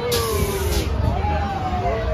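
Riders on a small kids' drop-tower ride calling out in long held cries that slowly fall in pitch. A high hiss sounds through the first second.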